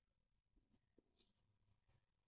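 Near silence, with only very faint scratches of a marker writing on a whiteboard.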